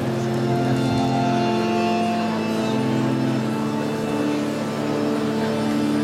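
Slow devotional music on a keyboard instrument: a melody of held notes changing every second or so over a steady low drone.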